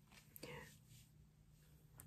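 Near silence: room tone, with one brief faint vocal sound, like a soft murmur, about half a second in.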